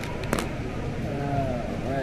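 Steady bar-room background noise with faint voices, and a single sharp clack about a third of a second in as a smartphone is set down on the hard bar counter.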